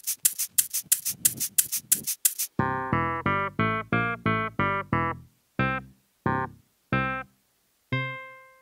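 Backing music for the act: a quick run of sharp percussive clicks, then short staccato keyboard chords about three a second, thinning to three spaced single chords near the end.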